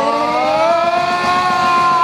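A long siren-like wail in a live punk rock song: one pitched tone slides upward, then holds steady at a loud level.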